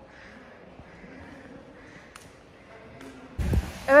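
Faint background music, then about three and a half seconds in a sudden loud rush of wind buffeting the microphone.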